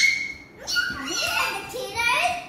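Young girls' high-pitched voices: a short rising squeal at the start, then excited calls and chatter while playing.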